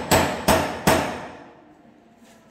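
Hammer blows while a new door is being fitted in its frame: three sharp strikes less than half a second apart, the last one dying away within about half a second.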